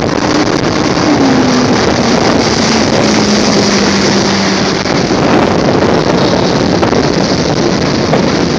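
Evinrude 90 outboard motor driving a small runabout at speed, mixed with wind buffeting the microphone and water rushing past the hull. The engine's note falls a little over the first few seconds.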